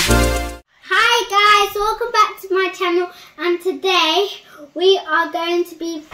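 Electronic intro music with heavy bass cuts off about half a second in; after a short pause a young girl sings a short tune in a string of pitched syllables, some notes held and wavering.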